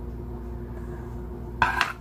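A steady low hum, then near the end a short clack of a plastic paper punch knocking on the tabletop as it is moved.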